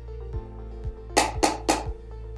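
Three quick taps on hollow 3D-printed piggies, about a quarter second apart, each piggy's hollow shape optimized so its tap sound carries its own set of frequencies for acoustic tagging. Background music with a steady beat runs underneath.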